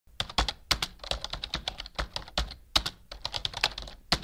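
Computer keyboard typing sound effect: a rapid, irregular run of key clicks, laid over a title appearing on screen.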